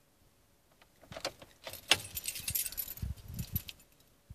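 A bunch of car keys jangling, with a quick run of clicks and light knocks, starting about a second in and lasting about two and a half seconds after a quiet first second.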